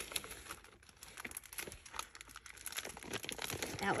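Plastic packaging crinkling and crackling as it is handled, in irregular small crackles.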